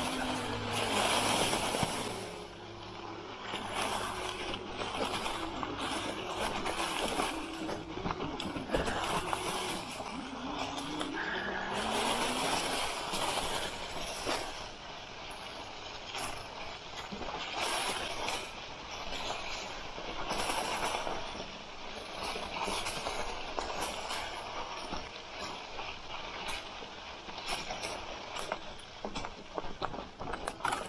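Fat tyres of an electric bike rolling through dry leaves, a crunching rustle that swells and fades every few seconds. Through roughly the first half, the electric drive motor's whine glides up and down with speed.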